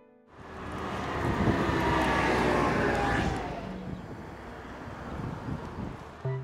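A vehicle passing on the road: a rush of tyre and engine noise that swells over the first couple of seconds and then fades away as it goes by.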